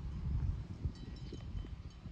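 Leafy fruit-tree branches rustling and being handled during fruit picking, an irregular low crackle. Faint high chirps about a second in.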